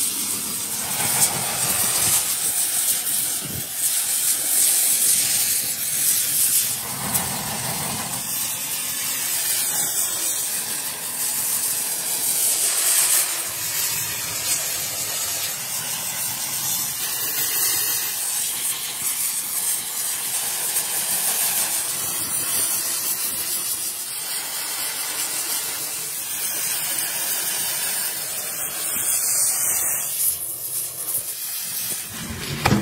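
Gas torch flame hissing steadily as it singes the hair off a beef head.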